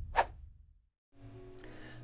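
Music fading out, with one short swish sound effect just after the start. Then a moment of dead silence gives way to faint room tone with a low hum.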